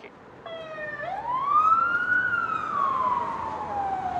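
A megaphone's built-in siren sounding one wail: a short steady tone, then a pitch that rises for about a second and slides slowly back down before cutting off near the end.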